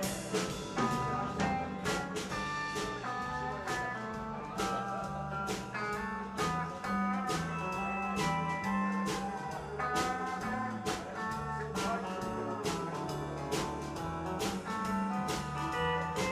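Country band playing an instrumental break with a steel guitar carrying the melody over strummed guitars, electric bass and a drum kit keeping a steady beat.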